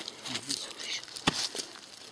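Footsteps and rustling on a dry dirt path, with a few sharp knocks, the loudest just over a second in.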